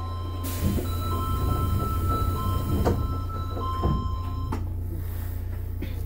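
Subway train car running, heard from inside: a steady low rumble with thin electric whining tones from the drive that shift pitch in steps, as the train gets under way. A couple of sharp clicks come from the running gear.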